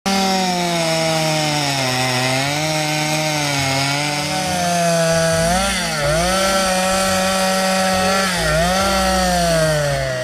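Two-stroke chainsaw running at high revs while carving wood. Its pitch sags a few times as the chain bites into the log, then picks back up.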